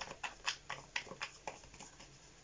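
Tarot cards being shuffled by hand: a run of quick, soft card slaps about four a second, thinning out near the end.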